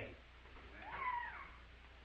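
One short, faint, high-pitched vocal call about a second in, rising and then falling in pitch. It sits over the steady low hum of an old recording.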